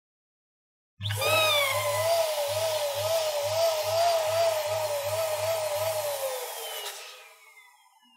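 Electric balloon pump running and inflating a latex balloon held on its nozzle. It starts suddenly about a second in, with a pulsing low hum and a wavering whine. Near the end the whine falls in pitch as the pump stops.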